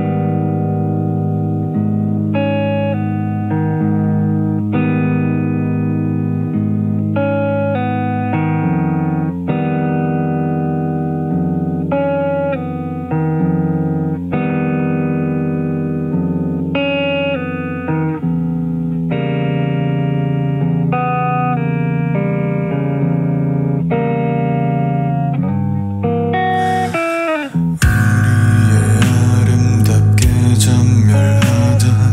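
Opening of a Korean visual-kei rock song: a clean, melodic instrumental intro of held notes with a steady low bass. About 27 seconds in comes a brief falling swoop, then the full band comes in, louder and fuller, with drums.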